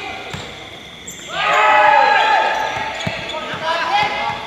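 A basketball game on a hard court: the ball bounces a few times, and a loud burst of rising-and-falling squeaks and calls from the players comes between about one and a half and two and a half seconds in.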